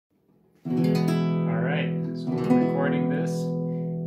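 Nylon-string classical guitar strummed twice, about half a second in and again after two seconds, with the chord ringing out after each strum. The guitar is in tune.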